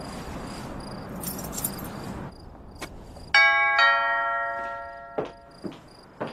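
A two-tone doorbell chime rings once, ding-dong, the second note lower, and the notes ring on and fade over about a second. Before it, a steady car engine sound cuts off suddenly. Faint cricket chirps run underneath.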